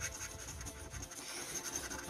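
A coin scraping the scratch-off coating from a paper scratchcard in quick, irregular short strokes.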